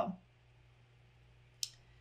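The end of a woman's word, then a quiet pause of room tone broken by a single short, sharp click about one and a half seconds in.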